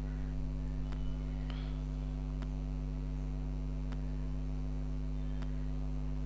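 Steady electrical mains hum, with about five faint, light clicks of small metal parts being handled in an open motorcycle engine crankcase.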